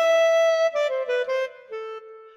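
Yamaha Tyros3 arranger keyboard playing its Ballad Clarinet Super Articulation voice. A held high note is followed by a quick run of short, detached notes stepping down, ending on a lower held note.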